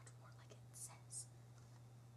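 Near silence with faint whispering: two short hissy whispered sounds around the middle, over a steady low electrical hum.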